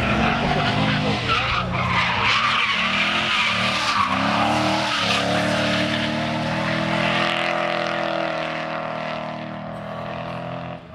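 Drift car's engine revving hard, its pitch swooping up and down and then held high, while the rear tyres screech as the car slides sideways through a corner in a cloud of tyre smoke. The sound fades near the end as the car moves away.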